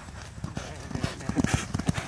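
Racehorse galloping past on a sand track: a fast run of hoofbeats that grow louder as the horse nears.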